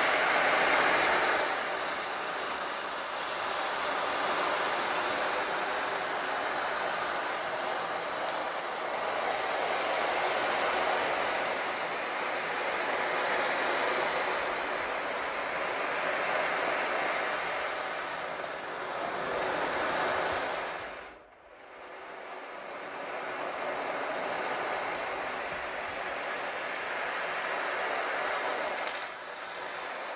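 Meinl 22-inch sea drum tilted slowly, the beads inside rolling across the head in a continuous surf-like wash that swells and ebbs. The wash stops almost completely for a moment about two-thirds of the way through, then starts again.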